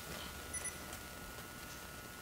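Quiet room tone with a faint steady whine, and a brief high double chirp about half a second in, followed by a few faint clicks.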